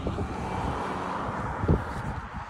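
A car driving past, its tyre and engine noise swelling and then fading, with wind rumbling on the phone's microphone and a soft thump near the end.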